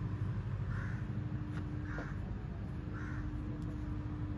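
Crow cawing three times, about once a second, over a steady low hum of outdoor background noise.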